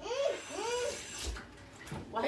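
A young child's high voice making two short wordless calls that rise and fall in pitch, followed by a brief rustle or knock.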